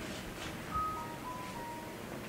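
A faint, short electronic tune of four pure notes: one higher note about two-thirds of a second in, then three lower notes close together in pitch, over quiet room hiss.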